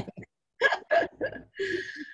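Short, broken bursts of a person's laughter over a video call, followed near the end by a brief steady high tone with hiss that fades away.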